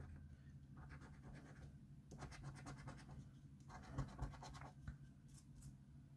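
A coin scratching the scratch-off coating of a paper scratchcard. The strokes are faint and quick, coming in short runs with brief pauses between them.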